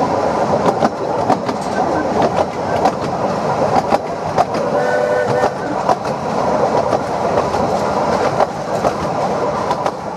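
Narrow-gauge steam train carriage running along the line, heard from on board: a steady rumble and rattle with wheels clicking over the rail joints. A short pitched note sounds about five seconds in.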